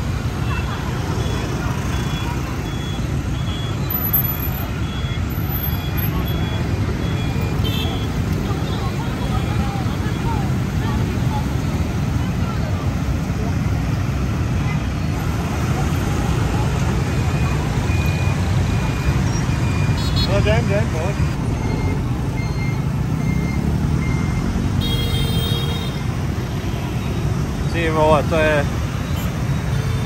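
Dense scooter and motorbike traffic crossing a city intersection: a steady low drone of many small engines, with strings of short beeps and horn toots at times and a few voices near the end.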